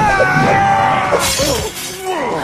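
A cartoon character's long, drawn-out yell, followed about a second in by a short crashing noise, over background music.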